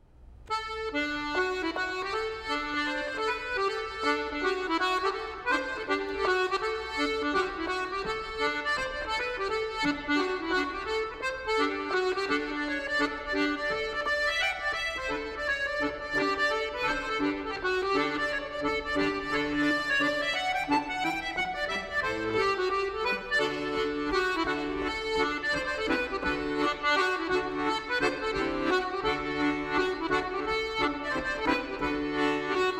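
Solo Brandoni accordion playing a set of Irish reels, starting about half a second in.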